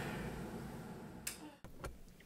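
Faint room tone, then a bedside lamp switch clicking off a little over a second in, followed by another brief click.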